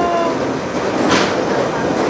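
Plum sorting and grading machine running: conveyor belts and chutes carrying green plums, a steady dense mechanical clatter. A brief hiss comes about a second in.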